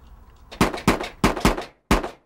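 Five sharp gunshots fired in quick, uneven succession, beginning about half a second in, each with a short ring-out.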